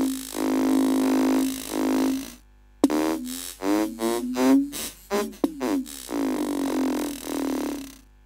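Logic Pro's Alchemy synth playing an imported groove loop through its granular engine while the grain size is changed. First comes a held tone for about two and a half seconds; then, after a short break, a run of choppy, stuttering fragments whose pitch keeps shifting. It is a fluctuating granular sound, the grains heard almost individually.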